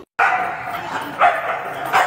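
Dogs barking and yipping as they play, echoing off the concrete of a parking garage, with louder barks about a second in and near the end.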